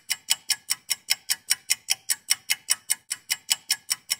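Rapid, evenly spaced clock-like ticking, about five sharp ticks a second, keeping a steady beat.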